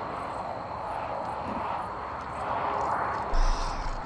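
Steady, slowly swelling rushing noise of outdoor night ambience picked up by a phone recording, with a low bump near the end.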